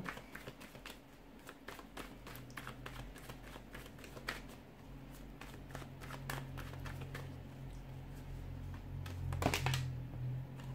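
A tarot deck being shuffled by hand: a steady run of quick card flicks, riffles and taps, with a louder clatter near the end as cards fly out of the deck onto the table.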